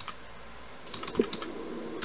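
Computer keyboard typing: a short run of light keystrokes about a second in.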